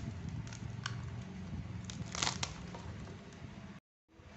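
Plastic courier bag and packing tape crinkling and tearing as they are pulled off a boxed phone by hand, with a few sharper crackles; the sound cuts off abruptly just before the end.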